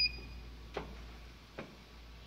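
A short electronic key beep from a CO2 laser cutter's control panel as a button is pressed, followed by two soft clicks.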